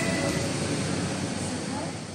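Indistinct murmur of voices and room noise in a large, echoing hall, slowly fading out.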